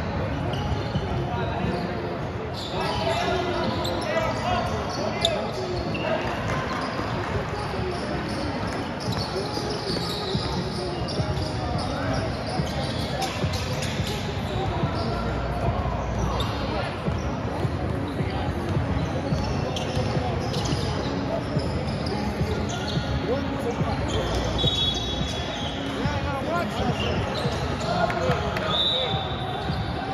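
Basketball game sounds in a large echoing gym: a basketball bouncing on the court amid the shouts and chatter of players and spectators.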